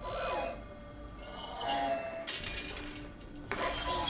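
Film soundtrack: background music mixed with sound effects, including metallic clinks, a few short tones and a brief hissing burst about halfway through.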